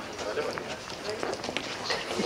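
Faint, indistinct background talk from several people, with a few light clicks or knocks.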